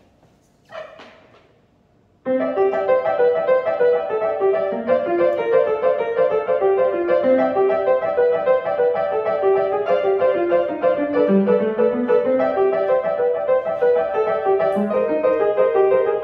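Acoustic upright piano beginning a fast toccata about two seconds in, a dense, driving stream of quick notes played by a child.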